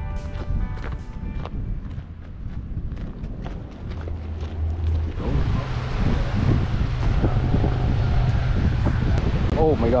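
Guitar music trails off in sparse plucked notes. About five seconds in it gives way to wind buffeting the microphone outdoors, with voices near the end.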